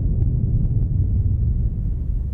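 Deep, steady low rumble from an outro sound effect: the drawn-out tail of a falling cinematic boom.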